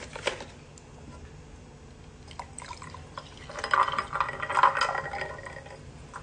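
Milk carton cap being opened with a few quick clicks, then milk poured from the carton into a glass of ice, a gurgling fill starting about three and a half seconds in and lasting about two seconds.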